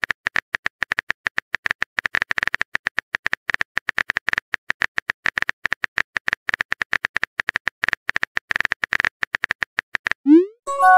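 Typing sound effect of a chat-story app: rapid, uneven clicks, several a second, all at the same pitch, as the next message is typed out.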